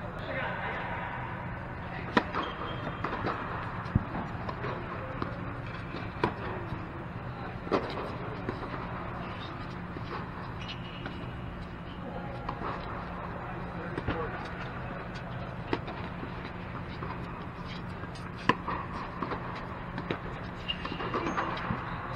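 Tennis balls struck by rackets in doubles rallies: sharp pops about every two seconds, over a steady low hum in the reverberant dome, with players' voices now and then.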